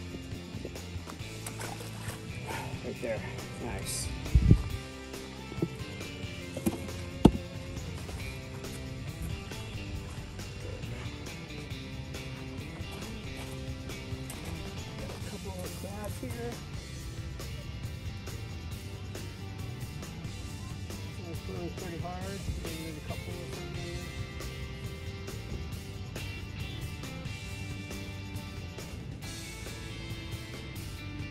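Background music with a steady beat, broken by a couple of loud, short low thumps about four and seven seconds in.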